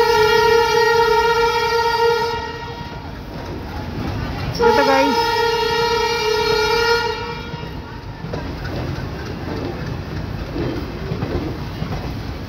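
Two long blasts of a diesel locomotive's horn, each about two and a half seconds long, the second starting about four and a half seconds in with a brief dip in pitch. Under and after them comes the steady rumble and clickety-clack of railway coaches rolling past.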